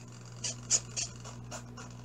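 An RC plane's servo making a little noise just after the receiver is powered: a steady low hum with a few short scratchy bursts in the first second or so.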